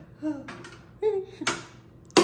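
Short wordless vocal murmurs from a woman, with one sharp click of metal about one and a half seconds in as a screwdriver works on a steel oven door frame.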